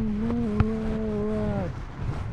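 A person's voice holding one long drawn-out note, about two seconds, steady and then sliding down and stopping near the end, with a single sharp click about half a second in.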